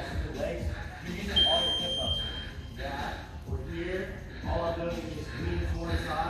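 A gym round timer's electronic beep: one steady high tone, about a second and a half long, sounding about a second and a half in.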